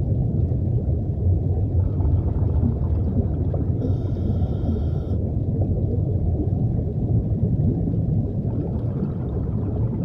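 Low, steady underwater rumble, with a faint high hiss lying over it for about a second, four seconds in.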